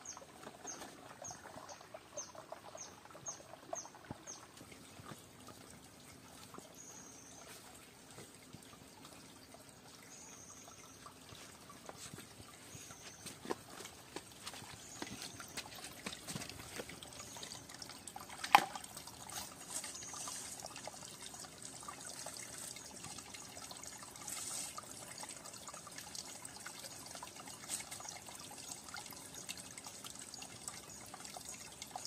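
Shallow rocky stream trickling, getting louder about halfway through, with water moving around hands in the pool. A run of quick high chirps in the first few seconds, a few more high calls after, and one sharp knock a little past halfway.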